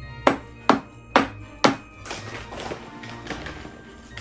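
Four sharp taps about half a second apart in the first two seconds, a wooden spatula knocking cake batter off the rim of a glass mixing bowl, over background music.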